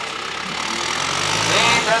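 A John Deere farm tractor's diesel engine running as the tractor drives across the field, growing louder in the second half.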